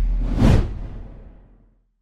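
A whoosh sound effect over a deep low boom, part of an animated logo sting. It swells to a peak about half a second in and fades away to silence by about a second and a half.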